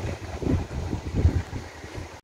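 Wind buffeting the microphone in uneven gusts, a low rumble, with the sea washing on the pebble shore behind it.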